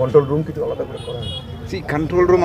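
A man talking, with outdoor street background noise.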